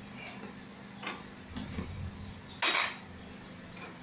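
Metal tools or parts clinking with a few light clicks, then one loud, sharp metallic clatter about two and a half seconds in, lasting about a quarter of a second.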